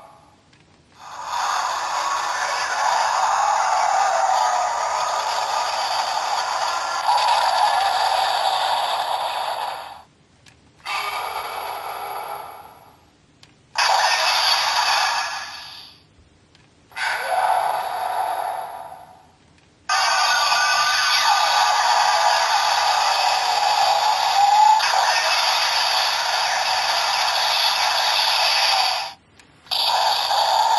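Electronic sound effects and music played by a Black Spark Lens toy (Trigger Dark version) through its small built-in speaker. The sound is thin with no bass and comes in about six separate bursts of a few seconds each, with short breaks between them.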